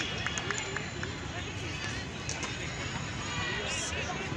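Indistinct voices of several people talking in the open air, over a constant low background rumble.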